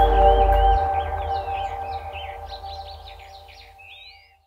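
The last held note of the background music ringing on and slowly fading, with birds chirping again and again over it; everything fades away by the end.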